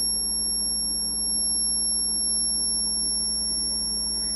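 High-voltage arc from a stainless steel inductor lead into a water bath, driven by a pulsed transformer circuit: a steady high-pitched whine over a low hum and a faint hiss.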